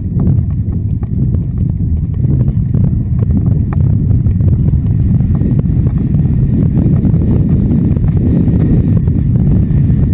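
Hoofbeats of a ridden horse moving fast over wet sand, under a heavy, steady low rumble of wind on the microphone.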